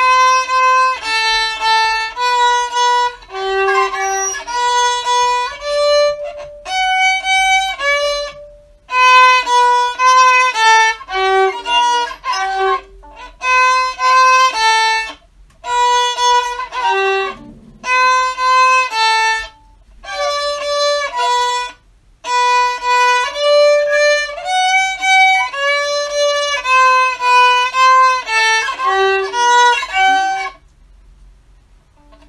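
Unaccompanied solo violin played by a young student: a simple study of separate bowed notes in short phrases, with brief pauses between phrases.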